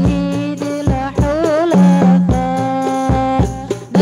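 Islamic devotional sholawat singing by women over hadrah frame drums (rebana), amplified through a microphone. The voice holds long notes with ornamented, wavering turns, while the drums strike in an uneven pattern of several strokes a second.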